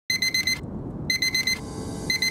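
Electronic alarm clock beeping in quick bursts of about four beeps, two bursts about a second apart, over a low rumbling background.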